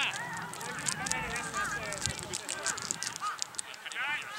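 Several players' voices shouting and calling across an open football field, overlapping at a distance.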